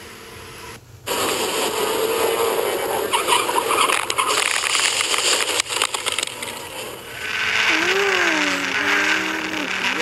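Onboard go-kart audio: loud rushing wind and kart engine noise that starts suddenly about a second in, with a wavering engine pitch that rises and falls over the last few seconds.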